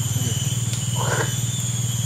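A steady low drone with a fast, even pulse, like a small motor running, under two steady high-pitched tones. A short soft hiss comes about a second in.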